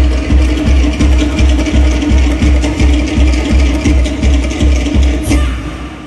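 Drum-driven Polynesian dance music with a fast, even bass beat under a held note. It fades out near the end.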